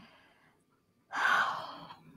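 A woman's audible breath about a second in, a breathy rush lasting most of a second, after a near-silent pause.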